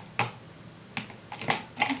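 Makeup items handled on a tabletop: about five short, sharp clicks and taps spread over two seconds as products are put down and picked up.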